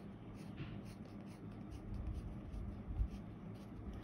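Graphite colored pencil scratching on paper in a series of short, quick outline strokes.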